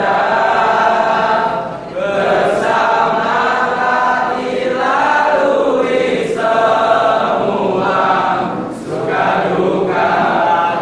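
A group of young men's voices singing together in unison, phrase by phrase, with short breaks between the phrases.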